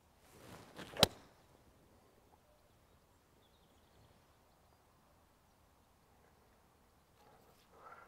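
Golf swing with a seven iron off a tee: a brief rising swish of the downswing, then one sharp click as the clubface strikes the ball about a second in.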